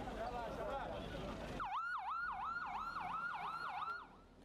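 Crowd voices at first. Then, from about a second and a half in, an ambulance siren starts, wailing up and down quickly at about three sweeps a second.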